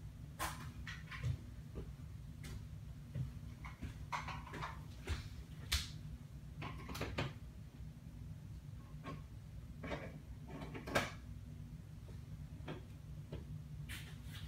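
Scattered clicks, taps and handling noises as a battery wall charger is plugged into a wall outlet, the sharpest knocks about six and eleven seconds in, over a steady low hum.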